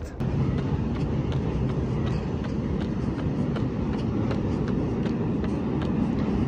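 A runner's footfalls while jogging, faint and regular at about three a second, under a steady low rumble.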